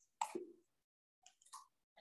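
Mostly quiet pause in a room, broken about a quarter second in by a brief faint vocal sound, a short murmur or mouth noise, and a couple of fainter blips later.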